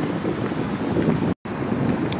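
Wind blowing on the microphone at the shore: a steady low noise, broken by a split-second gap of silence about one and a half seconds in.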